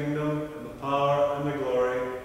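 A man's voice chanting liturgy on sustained, level pitches, in two phrases with a short break about two-thirds of a second in.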